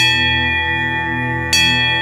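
Devotional backing music between chanted lines: a bell struck twice, about a second and a half apart, each strike ringing on over a steady low drone.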